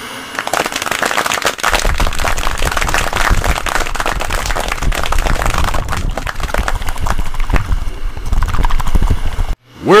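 Science-fiction sound effect of a spaceship flying through a vortex: a dense crackling with a low rumble that joins about two seconds in, cutting off suddenly shortly before the end.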